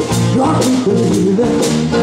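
Live blues band playing an instrumental passage on guitars and drum kit, with drum and cymbal strikes about twice a second under a melody line that bends in pitch.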